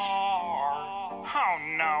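A Latin-pop style parody song played back through a TV speaker: a male puppet-style voice holds one long sung note over the backing music, then a spoken voice comes in near the end.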